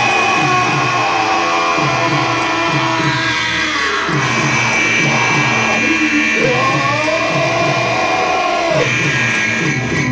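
Live band music played loud: a steady low thudding beat about twice a second under sustained, noisy held tones, with wavering pitched glides through the middle.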